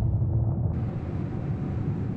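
Low rumbling tail of a boom sound effect, slowly dying away.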